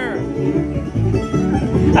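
A band playing country-style music with a steady bass beat.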